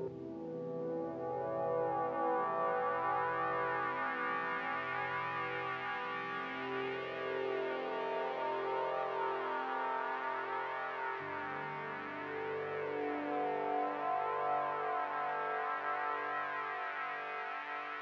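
Roland JU-06A synthesizer playing slow, sustained ambient pad chords with a slowly sweeping shimmer. The bass notes and chord change about eleven seconds in.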